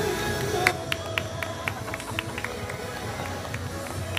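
Live band music in a room, quieter than full playing, with a run of sharp clicks about four a second starting under a second in and stopping near the end.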